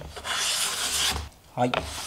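A replaceable-blade Japanese hand plane (kanna) making one stroke along a narrow wood strip: a light knock, then a rasping hiss of about a second as the blade shaves the surface. The blade has just been adjusted so that it cuts evenly across the width.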